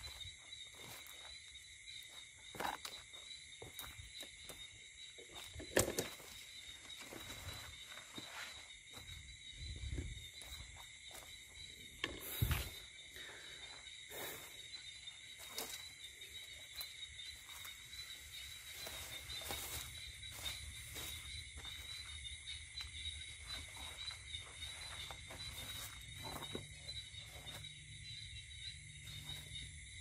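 Steady high-pitched chorus of night insects, with footsteps and rustling of someone walking through overgrown weeds and leafy plants. A couple of louder knocks stand out about six and twelve seconds in.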